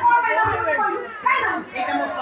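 Speech: a woman actor's high voice delivering stage dialogue, with a short pause near the end.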